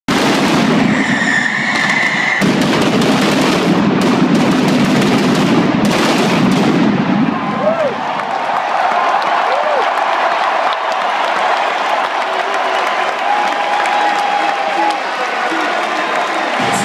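Arena pyrotechnics going off with a heavy, crackling blast over a loud crowd roar for about the first seven seconds, then the crowd cheering, with whistles and shouts.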